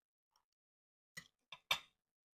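A metal spoon set down against a glass baking dish: three short clinks in the second half, the last the loudest.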